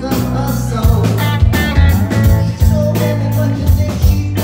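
Live rock band playing: electric guitar, electric bass and a steady drum beat, with a man singing lead, heard from the audience.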